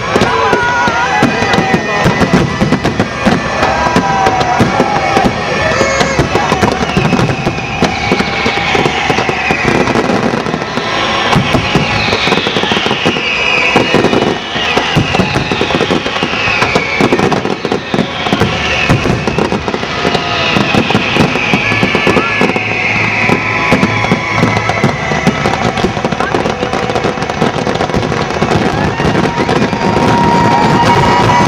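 Large aerial fireworks display: a steady barrage of bangs and crackling bursts over an accompanying music soundtrack. A run of falling whistles sounds through the middle stretch.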